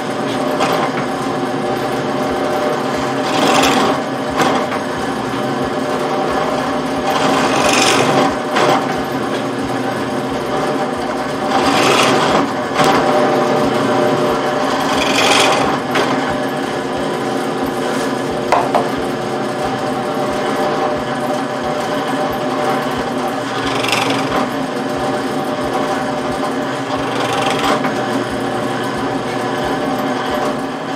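Drill press motor running steadily while its bit is plunged into a wooden 4x4 block to cut shallow cupped holes. Each cut is a short, loud rasp over the hum, repeating several times a few seconds apart.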